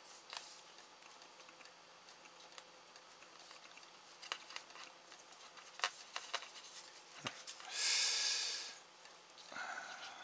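Quiet handling of a small RC servo while its motor wires are unsoldered, with a few light clicks and a hiss of about a second near the end.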